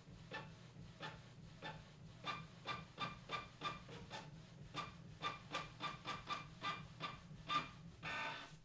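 Canon MG3500-series inkjet printer printing a page: the print head shuttles back and forth in short, evenly spaced passes, about three to four a second, over a low steady hum.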